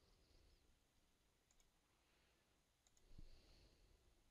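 Near silence: room tone, with two faint computer-mouse clicks in the middle and a soft low bump about three seconds in.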